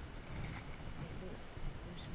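A faint mumbled voice over a steady low background rumble.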